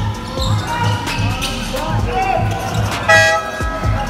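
Live court sound of a basketball game in a near-empty gym: a basketball being dribbled in a steady rhythm about three bounces a second, with players calling out. About three seconds in, a short, loud buzzer blast sounds.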